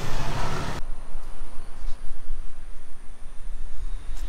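Outdoor noise beside a road: a steady hiss with traffic rumble that cuts off abruptly about a second in, leaving an uneven low rumble.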